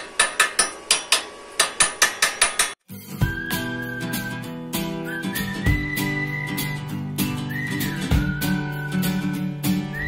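A run of sharp, regular taps, about four or five a second, stops after nearly three seconds. Background music follows: a whistled tune over guitar chords.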